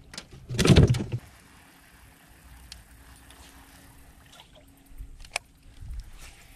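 A brief loud clatter in a small aluminum flat boat within the first second, then quiet with a faint steady hum and a few light clicks.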